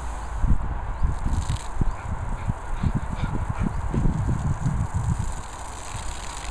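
Garden hose jet spraying water onto grass, a steady hiss, with irregular low rumbles throughout that are louder than the spray.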